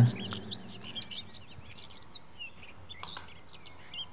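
Small birds chirping in the background: many short, high chirps scattered throughout, with a couple of faint clicks.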